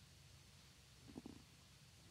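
Near silence: room tone with a faint low hum, and one brief, faint low sound a little over a second in.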